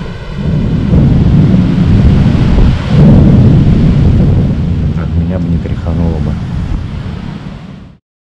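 Thunder rolling: a loud, low rumble that builds about a second in, swells again around three seconds, then fades and cuts off suddenly at the end.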